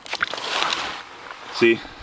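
Water and slush sloshing in an ice-fishing hole as the sonar transducer goes back into the water, starting with a couple of light clicks and fading after about a second and a half.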